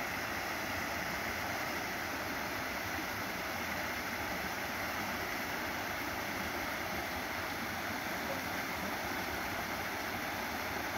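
Small waterfall cascading over rock into a pool, a steady rush of water.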